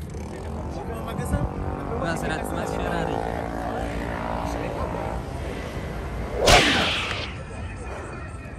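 Sports car engine running with a steady drone that rises slightly at times. Near the end a brief, loud whoosh sweeps down in pitch.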